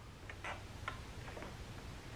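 A few faint, irregular clicks from the FrSky Tandem X20S RC transmitter being handled, fingers working its plastic controls.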